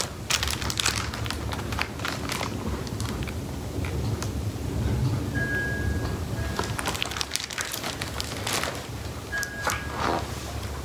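A large hardcover picture book being handled and its pages turned, with brief paper rustles near the start and again toward the end, over quiet background music.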